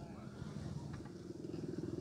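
Small motorcycle engine running at low speed, its firing getting louder toward the end.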